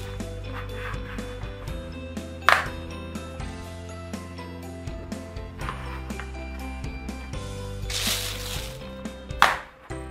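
Plastic Play-Doh toy grill being pressed shut and opened by hand over Play-Doh, with sharp plastic clacks about two and a half seconds in and again near the end, and some handling rustle in between. Soft background music with held notes plays throughout.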